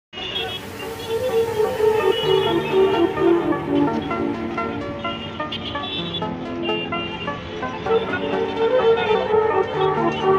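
Background music laid over the footage: a melody of held notes that shift in pitch.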